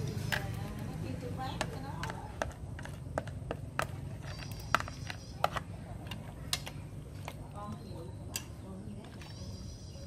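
Irregular sharp clicks and taps of wooden chopsticks against a plastic bowl and the rim of an aluminium pot as seasoning is scraped in and the fish is pushed around in the broth, over a low steady hum.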